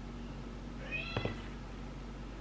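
A short, high-pitched call from a pet that rises and then holds, about a second in, followed by a couple of light clicks.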